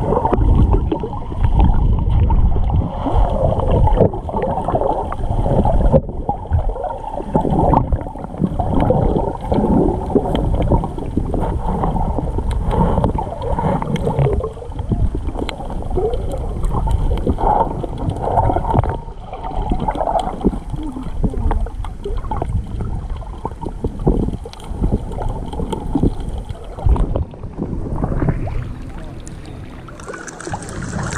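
Muffled underwater sound picked up by a submerged camera: water sloshing and gurgling against the housing, with scattered small clicks. Near the end it thins out, and the camera breaks the surface.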